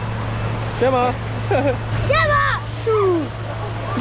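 Short voice calls, a few high-pitched, with no clear words, over a steady low hum.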